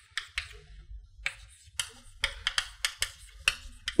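Chalk tapping and scratching on a blackboard as a word is written: a quick, irregular series of sharp taps, with a faint low rumble underneath.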